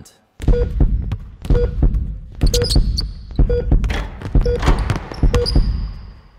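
A basketball being dribbled on a hardwood court, bouncing about once a second and echoing in a large, empty arena hall.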